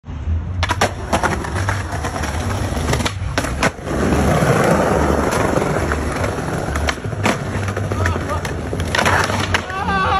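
Skateboard on brick pavers: several sharp clacks of the board striking the ground in the first four seconds, then a steady rumble of the wheels rolling over the pavers, with another clack a few seconds later.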